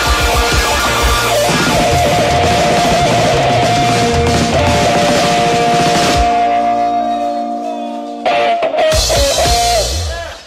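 Live rock band of electric guitars, bass and drum kit playing the closing bars of a song. After about six seconds the drums stop and held guitar notes ring and fade, then the whole band comes back in loud for a final burst near the end.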